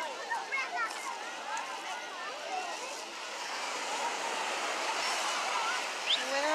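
Busy beach ambience: a steady hiss of surf and wind on a phone microphone, with scattered voices of the crowd around, most noticeable in the first second or so.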